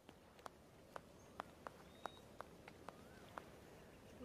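Near silence, with faint sharp taps at uneven intervals of roughly a third to half a second, and a faint short rising-and-falling chirp about three seconds in.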